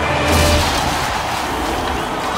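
Film sound effect of a giant egg bursting open: a deep boom about a third of a second in, then a long rushing hiss like liquid spraying out.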